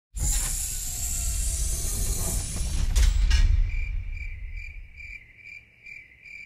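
A loud rushing, rumbling noise with two sharp knocks near its end, dying away after about three and a half seconds, then crickets chirping in an even rhythm of about two chirps a second.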